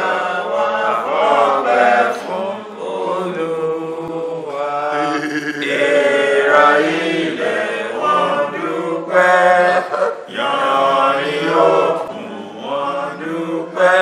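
Men's voices singing a chant-like hymn together, in drawn-out phrases with short breaks between them.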